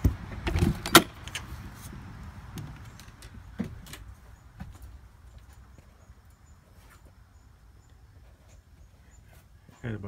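A camper trailer's entry door being opened with a few sharp clacks and knocks in the first second, then scattered footsteps and small taps on the floor inside, growing quieter.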